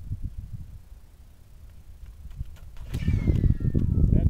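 Wind buffeting the microphone: an uneven low rumble that dies down in the middle and swells much louder about three seconds in.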